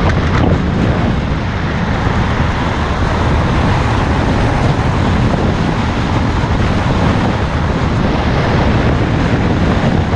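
Steady wind rush on the microphone over the running single-cylinder engine of an Aprilia Scarabeo 200ie scooter cruising at road speed.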